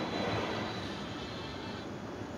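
Steady mechanical hum and hiss of a moving escalator and the terminal hall around it, with a faint high whine that fades out near the end.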